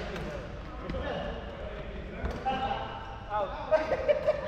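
Badminton rackets hitting a shuttlecock, a few short sharp strikes, with players' voices in the background.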